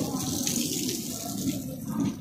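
Passenger train coaches rolling past with a low rumble and clatter of wheels on the rails, while water hisses and splashes up from the flooded track beneath them.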